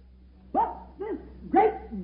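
A dog barking: three short barks about half a second apart, starting about half a second in.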